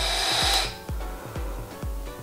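Smok Devilkin vape mod and tank being fired and drawn on: a hiss of air pulled through the heated coil that stops about two-thirds of a second in. Background music with a steady beat runs underneath.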